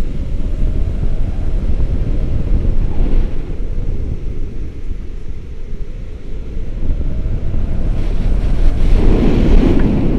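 Wind from a tandem paraglider's flight buffeting the microphone of a camera on a selfie stick: a loud, steady low rumble that swells strongest near the end.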